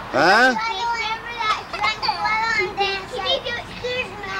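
Young children's voices calling out and chattering while playing, with one high cry that falls in pitch right at the start.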